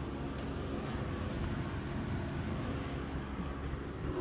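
A steady low mechanical hum with a faint hiss, holding level with no sudden knocks or clicks.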